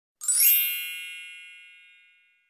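Logo intro chime: a single bright ding with many high overtones, struck about a quarter second in and slowly fading away.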